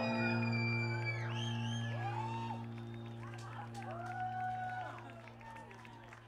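A live band's last chord ringing out and slowly fading, with whoops from the audience and scattered clapping starting about halfway through.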